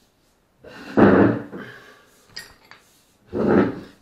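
Two short bursts of clattering handling noise, about a second in and again near the end, with a few faint clicks between: metal parts and tools being picked up and set down on a workbench.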